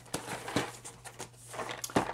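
Hands turning and gripping a cardboard toy box with a plastic window, giving a few light taps and rustles; the sharpest tap comes near the end.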